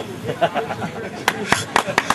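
A man laughing over crowd murmur, then a few scattered hand claps near the end as applause begins.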